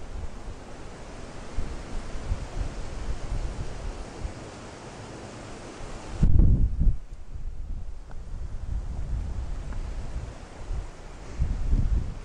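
Wind buffeting the microphone outdoors: an uneven low rumble in gusts over a steady hiss, with the strongest gust about six seconds in.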